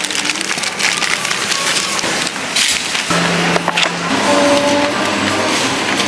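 Crinkling and rustling of plastic produce bags of apples being handled. Background music with held notes comes in about halfway.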